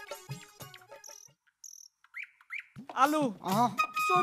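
Fading musical tones give way to a nearly silent gap holding a few short, high chirps, the last two rising in pitch, of the kind a small bird or insect makes. A man's voice starts near the end.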